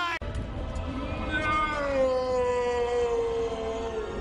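Darth Vader's long, drawn-out anguished yell of film dialogue, held for about three seconds with its pitch slowly sagging, over a low rumble.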